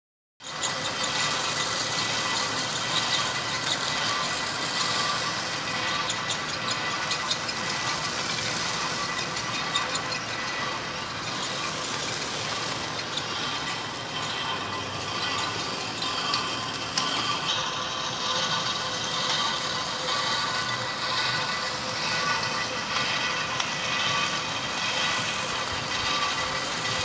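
Stone-crushing plant machinery running: a steady, dense din from the crusher and conveyor belts, with a constant high whine and small rattles and clicks throughout.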